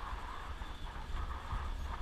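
Wind rumbling over an action camera's microphone while riding a bicycle, with the tyres rolling on a tarmac lane; a steady, even noise.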